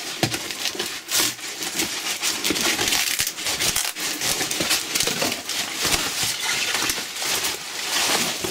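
Cardboard shipping box being torn open by hand: packing tape ripping and cardboard flaps scraping and crinkling in a continuous scratchy crackle, with small sharp clicks throughout.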